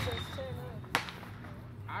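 A single sharp snap, like a crack or smack, about halfway through, over a steady low hum.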